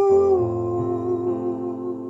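A man's voice humming a long held note with a slow vibrato over a sustained piano chord. About half a second in, the chord changes to a lower one with a deep bass note, and the voice and the ringing chord both fade away.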